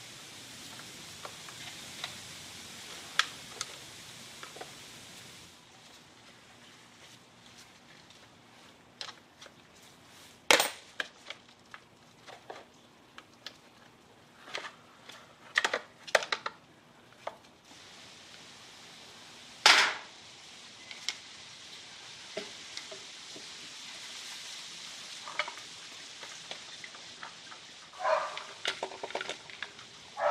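Scattered clicks and knocks of hard plastic parts being handled as a Poulan Pro PPB100 gas trimmer's fuel tank is worked loose from the engine and carburetor, over a faint steady hiss. Two sharper knocks come about ten and twenty seconds in, and a busier clatter near the end.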